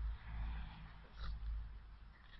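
A small dog growling in play while it wrestles with a cat, with a short faint call about a second in. A low rumble runs under it on the microphone.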